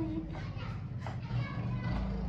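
Background voices, children's among them, over a low steady hum.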